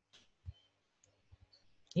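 Faint clicks of a computer mouse as the document is scrolled: one soft click about half a second in, then a few fainter ticks.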